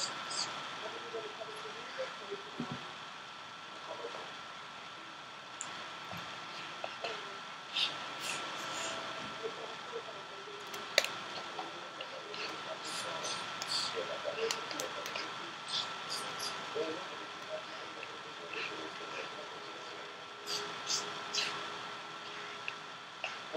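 Small clicks and rustles of hands, a comb and hair elastics working in a toddler's hair while ponytails are tied, with a few brief soft vocal sounds from the child. A faint steady high whine runs underneath, and the sharpest click comes about halfway through.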